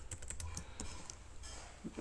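Computer keyboard typing: a quick run of keystrokes in the first second, then a few sparser, fainter ones.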